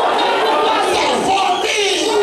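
Church congregation shouting aloud all at once: many overlapping voices in a continuous din, with no single voice standing out.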